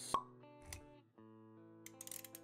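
Intro sting: a sharp pop just after the start, the loudest moment, and a softer click about half a second later, over held plucked-guitar notes.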